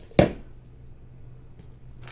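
A single sharp knock of a cardboard canvas tube against a tabletop, then quiet with a faint low hum.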